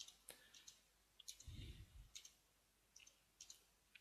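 Faint computer keyboard typing: irregular, scattered key clicks, with a soft low thump about a second and a half in.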